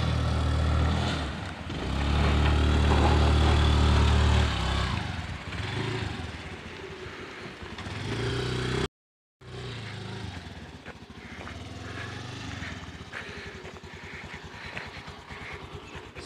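Small petrol motor scooter engine running as the scooter is ridden along a dirt track, loud for the first few seconds and then fading as it moves away. The sound drops out completely for a moment about halfway through, then a quieter engine-like sound runs on.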